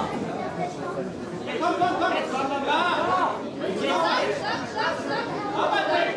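Spectators' voices: several people talking and calling out at once in a large hall, overlapping chatter without a break.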